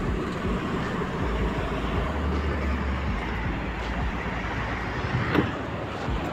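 Steady low rumble of road traffic, with a short louder sound a little after five seconds.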